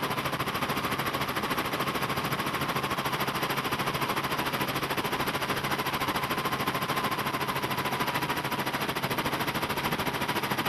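Helicopter rotor chopping in a rapid, steady beat, with a faint whine above it, as heard from aboard the aircraft.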